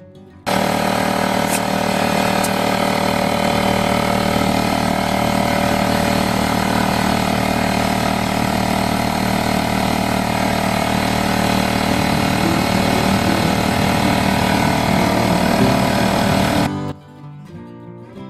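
Craftsman 6-gallon pancake air compressor's oil-free pump running steadily under load while filling a car tyre. It starts abruptly about half a second in and cuts off suddenly near the end.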